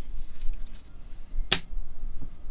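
Gloved hands handle a clear hard-plastic trading-card holder with light rustling, then one sharp plastic click about one and a half seconds in as the case meets the stack of cases.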